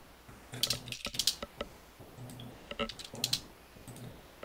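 Computer keyboard keys and mouse buttons clicking in a few short, scattered clusters while a trade order is entered.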